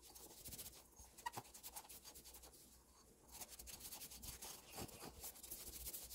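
A cloth rubbing and wiping over a dark ceramic teapot: faint, dry scuffing in two spells with a short lull between, and a light tick a little over a second in.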